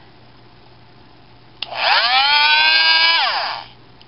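Dremel Multi-Max oscillating multi-tool, its switch freshly repaired, switched on with a click about a second and a half in. Its motor whine rises quickly in pitch, runs steadily for about a second and a half, then falls in pitch and stops as it is switched off.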